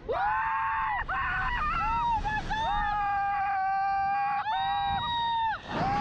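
Two riders screaming as a slingshot reverse-bungee ride catapults them upward: long, high, held screams one after another with short breaks for breath, at times overlapping, over the low rush of wind on the microphone.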